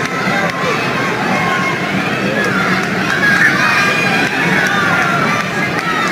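Crowd of spectators in an arena shouting and cheering, many voices overlapping at a steady level.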